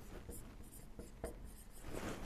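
Dry-erase marker writing on a whiteboard: a quick series of short, faint strokes as a word is written.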